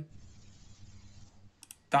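A few quick computer keyboard clicks near the end, as figures are typed into a calculator, over a faint hiss.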